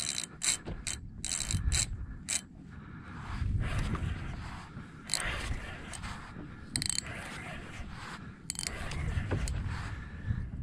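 Fishing reel's drag clicking in short, irregular spurts as a hooked Spanish mackerel pulls line off.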